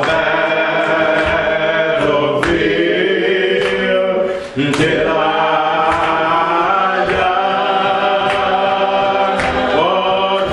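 A man singing a slow hymn into a microphone in long, drawn-out phrases, with other voices joining him, over sharp percussive hits that keep a slow beat.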